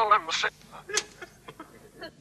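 A tape recording of a man's voice from a phone call played backwards: garbled reversed speech, strongest in the first half second, then short scattered fragments over a faint steady hum.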